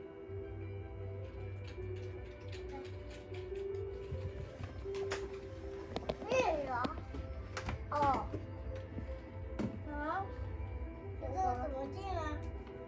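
Young child's high-pitched wordless vocal sounds: several short rising-and-falling cries from about six seconds in, over soft background music and a low hum. Scattered sharp clicks from a computer mouse and keyboard being pressed.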